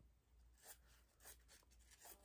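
A few faint snips of small craft scissors cutting a scrap of thin material, spaced about half a second to a second apart, over near silence.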